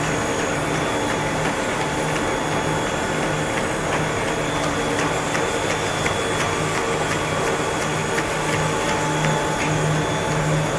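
Food extruder and feeder machinery of a core-filling snack line running: a steady mechanical drone with a few fixed tones and a low hum that pulses irregularly.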